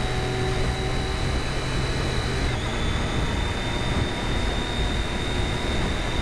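Sport motorcycle ridden at highway speed: a steady engine drone under a rushing haze of wind on the camera's microphone, with a thin steady high whine throughout.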